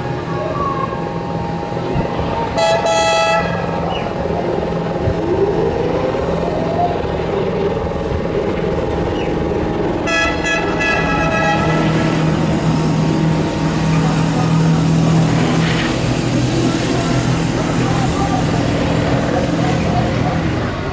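Air horn of an amphibious semi-truck boat, blown in two short blasts about two and a half and ten seconds in. Under the blasts, its engine drones steadily and grows louder through the second half as it comes closer across the water.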